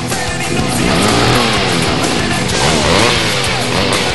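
Loud heavy rock music that gets louder about a second in, with sliding notes swooping up and down.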